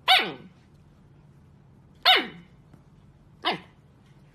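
Siberian husky puppy barking three times, about a second or two apart: each bark is a short, high yelp that falls sharply in pitch. The first two are the loudest.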